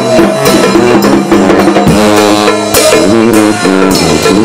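A brass band playing a second-line tune, very loud and close: a sousaphone carries the low bass line under the horns, with a bass drum and mounted cymbal keeping a steady beat.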